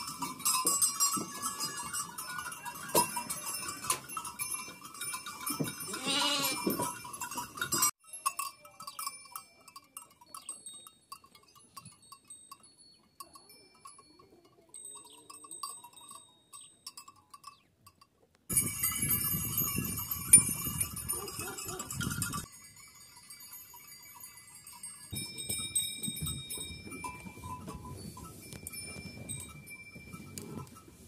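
Bells on a flock of Kangal sheep clinking and ringing as the animals move about, with a single sheep's bleat about six seconds in. The sound changes abruptly several times, loudest between about 18 and 22 seconds.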